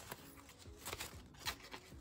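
Faint rustling and soft flicks of euro banknotes being leafed through and counted by hand.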